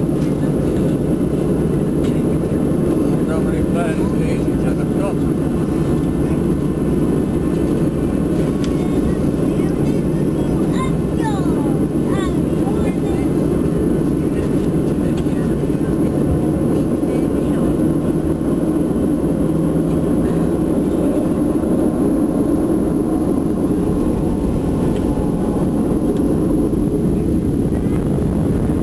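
Steady, loud jet airliner cabin noise while taxiing: a constant low rumble and hum of the jet engines, heard from inside the cabin at a window seat over the wing.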